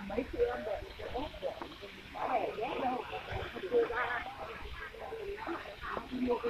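Indistinct talking in the background, with voices that come and go but no clear words.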